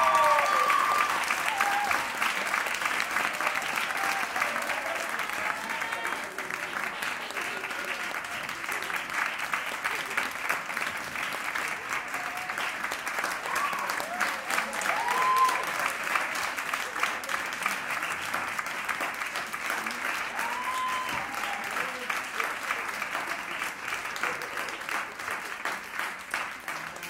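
An audience applauding steadily, with a few shouts of cheering over the clapping near the start.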